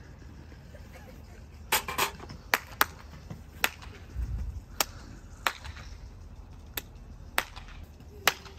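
About nine sharp hand claps at uneven intervals, meant to set off a hanging ghost decoration that does not respond. There is a brief low rumble about four seconds in.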